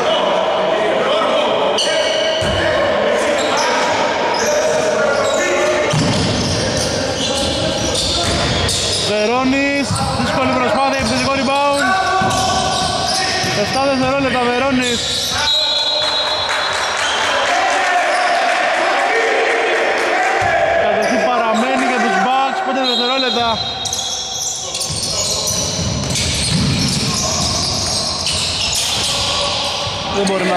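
Basketball game sounds echoing in a sports hall: a basketball bouncing on the hardwood court and players' voices calling out, louder around ten and twenty-two seconds in.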